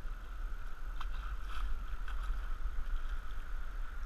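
Steady rush of moving river water around a canoe running a riffle, with a low rumble of wind on the microphone. A few faint paddle splashes come about one to one and a half seconds in.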